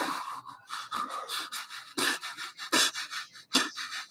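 Breathy, wheezing laughter: a string of short panting exhalations, about three a second.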